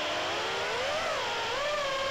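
BetaFPV HX115 3-inch quadcopter's brushless motors whining in flight, several pitches together gliding up and down as the throttle changes.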